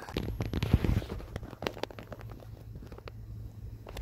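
Footsteps crunching through snow, with a dense run of crunches and knocks in the first two seconds that thins out afterwards.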